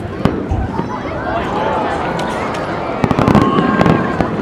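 Aerial fireworks shells bursting: a sharp bang about a quarter second in, then a quick run of several reports near the end as a new burst opens. Crowd voices carry on underneath.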